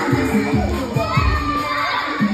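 A crowd of children shouting over loud dance music.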